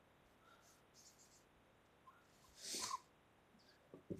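Near silence, with one faint, brief noise about three seconds in.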